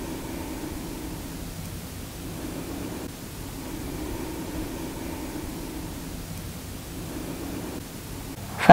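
Soft, steady hiss with a faint low hum that slowly swells and eases.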